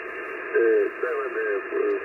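Speech: a man's voice received over 15-metre single-sideband shortwave radio. It sounds thin and band-limited, with no highs above about 3 kHz, over a light hiss.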